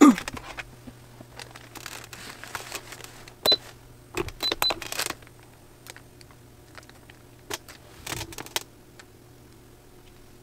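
Handheld heat press set down with a knock onto a hoodie and its transfer sheet, then scattered clicks, knocks and paper-and-fabric rustling as it is handled and pressed, busiest in the middle and again near the end. A faint low hum runs underneath, with a few very short high beeps in the middle.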